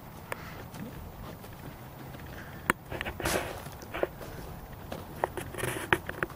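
Footsteps of someone walking on gravel: a scatter of soft, irregular crunches and clicks, a little louder around the middle.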